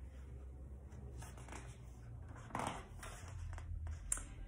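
Soft paper rustling as a page of a picture book is turned, with one brief louder rustle about two and a half seconds in, over a faint low room hum.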